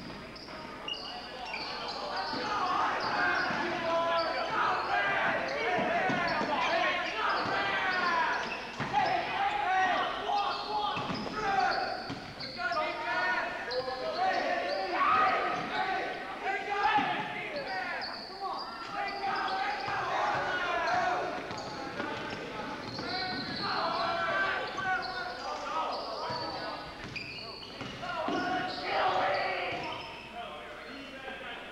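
Live basketball game on a hardwood gym floor: a ball bouncing, many short squeaks from sneakers, and shouts from players and spectators, all echoing in a large gym.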